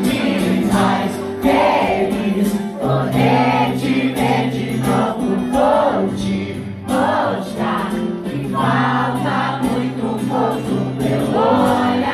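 Live acoustic pop-rock song: an acoustic guitar playing chords under singing, with many voices singing along like a crowd.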